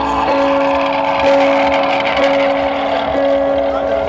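A post-rock band playing live at high volume through a large PA: sustained, distorted electric guitar notes that change about once a second over a dense wall of sound.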